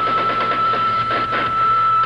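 Electric guitar holding one long, steady high note at the end of a live rock solo, bent up into pitch just before, over the band.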